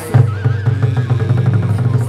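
Vietnamese chầu văn ritual music: a melody line over fast, dense drum and percussion strokes that come in loudly just after the start.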